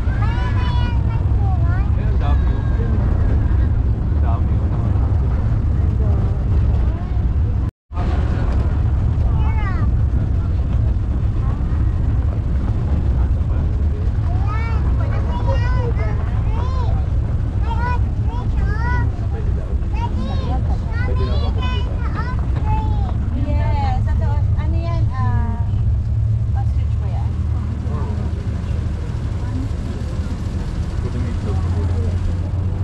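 Steady low rumble of a moving vehicle, with many short rising-and-falling chirping calls over it throughout. The sound cuts out for a moment about eight seconds in.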